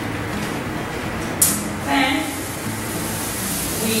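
Steady hum of lab equipment in a small room, with a sharp click about a second and a half in, a short burst half a second later, and then a brighter hiss of handling noise.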